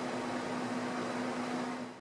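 Steady room hum with a low tone and a hiss, fading out just before the end.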